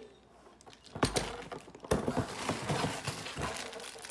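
Plastic-wrapped items and a cardboard box being handled: plastic crinkling and cardboard rustling with irregular clicks, starting sharply about a second in.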